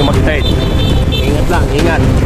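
Steady low rumble of a moving vehicle's engine and wind on the microphone, with voices over it.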